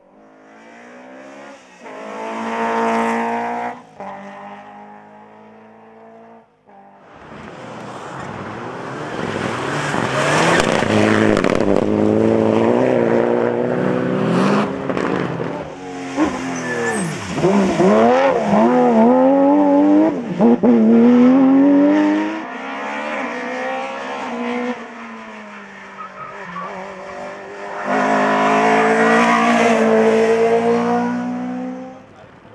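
Several rally cars driven hard on special stages, engines revving at high throttle with the pitch climbing and dropping through gear changes and passes. A short break comes about six seconds in, then a long loud stretch with repeated quick rises and falls in engine pitch. Another car is heard accelerating near the end.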